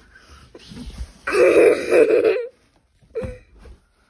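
A loud, raspy, wordless vocal shriek lasting about a second, starting about a second in, followed by a short breathy sound near the end.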